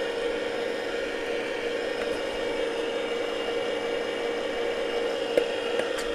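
Weston Deluxe electric tomato strainer's motor running with a steady whirring hum while tomatoes are pushed down its hopper with the plunger and pressed through the screen. One light click near the end.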